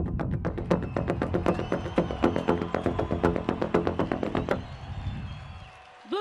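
Wearable PVC-pipe percussion rigs struck with paddles: a fast run of hollow, pitched strikes. It stops about four and a half seconds in and the ring fades away.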